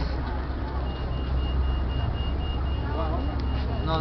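A steady low rumble with voices in the background, and from about a second in a rapid, even run of short high electronic beeps.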